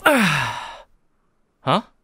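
A man lets out a loud, breathy yawn-like sigh while stretching, his voice falling steadily in pitch over nearly a second, followed near the end by a short puzzled "huh".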